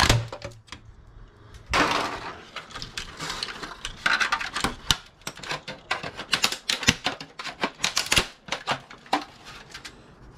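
Plastic case of an Xbox 360 being prised off its metal chassis with a flat-blade screwdriver: an irregular run of sharp clicks and knocks as clips snap and the blade taps and levers against plastic and metal, with a longer scrape about two seconds in.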